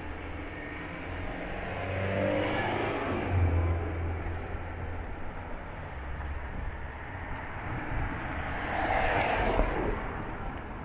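Cars driving past on a wet road: an engine note rises and falls through the first few seconds as one car moves off close by, over the hiss of tyres on wet tarmac, and another car swishes past near the end.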